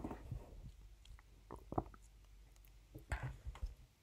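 A person swallowing sips of water close to the microphone, with scattered wet mouth and lip clicks.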